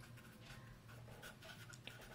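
Faint scratching of a pen writing on paper, in short light strokes.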